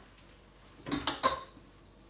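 Metal mixing bowl being handled at a stand mixer: a few quick clanks with a brief metallic ring about a second in.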